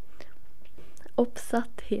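Only speech: a short pause with faint mouth clicks and a breath, then a few soft spoken or whispered words.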